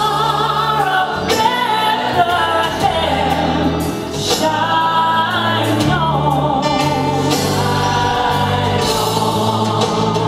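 Choir singing a gospel Christmas song, with held low bass notes from the accompaniment changing beneath the voices.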